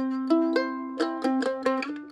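F-style mandolin playing a C chord with the root on the G string, strummed and then picked note by note with the strings ringing on. Near the end it slides up into a D chord with the open E ringing (a D add nine).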